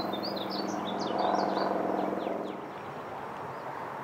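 Birds chirping, a quick run of short high chirps in the first two seconds. Under them runs the steady hum of a distant car, which swells and then fades away a little past halfway.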